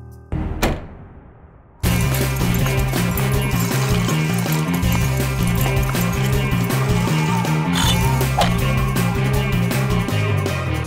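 Sliding office doors shutting with a sudden thud about a third of a second in, the sound dying away over a second or so. About two seconds in, loud background music cuts in with a steady, repeating bass line and carries on.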